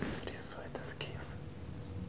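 Faint whispering over quiet room tone, the hissy sounds of a hushed voice strongest in the first second.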